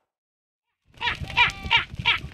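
A herd of goats bleating, many overlapping calls in quick succession over a low rumble. The calls start suddenly about a second in, after a moment of silence.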